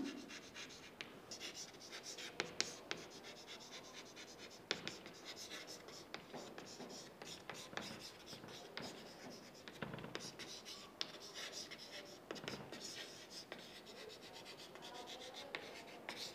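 Chalk writing on a chalkboard: faint scratching strokes broken by frequent sharp taps as the letters are formed.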